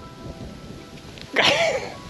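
A man's short breathy laugh, loud, starting about one and a half seconds in, over faint background music.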